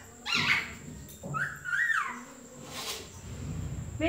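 Rose-ringed parakeet giving two short, pitch-bending calls, one about half a second in and another around a second and a half in.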